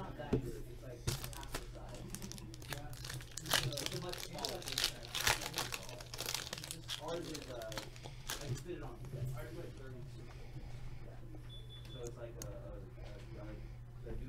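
Foil trading-card pack wrappers crinkling and tearing as packs are ripped open by hand, a run of sharp crackles that is thickest in the first half and thins out later.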